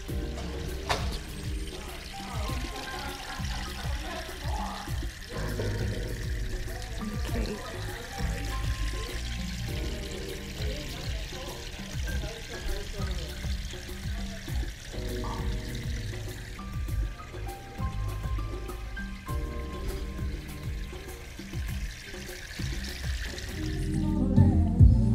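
Background music with a steady bass line over the continuous trickle and splash of a small lit tabletop fountain set beneath a tiered wedding cake.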